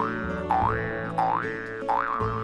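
Background music with a cartoon 'boing' sound effect repeated over it, a rising pitch sweep about every 0.7 seconds.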